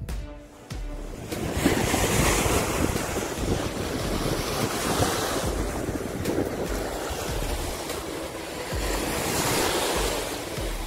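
Small waves breaking and washing up onto a sandy beach, with wind buffeting the microphone. The surf comes in about a second in, after a brief quieter moment, and then runs on as an even wash.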